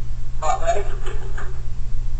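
A man speaking briefly, over a steady low hum.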